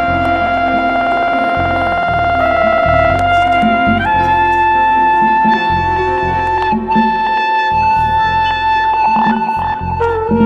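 Live jazz band: a trumpet-family horn holds one long note, then steps up to a higher note about four seconds in and holds it, over piano, drums and electric bass.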